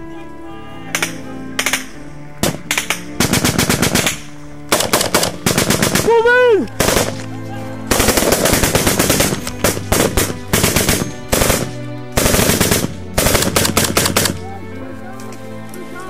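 Close automatic gunfire from a belt-fed machine gun and rifles: a few single shots at first, then long rapid bursts over and over, with short gaps between them.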